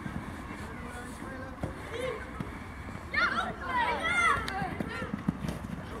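Open-air ambience of a youth football match: steady low field noise with a few faint knocks, then several voices calling out and shouting together about three seconds in.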